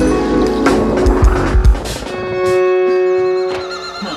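Instrumental beat music. The drums play for about two seconds, then stop, leaving a single held, steady-pitched chord that fades out near the end.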